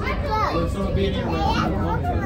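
Children's voices chattering and calling out, over a steady low rumble.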